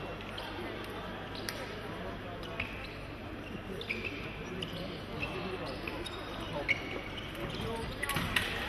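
Foil fencers' footwork on the piste: shoes tapping and thudding as they step back and forth, with a few short squeaks and sharp clicks, over a steady murmur of voices in a large hall.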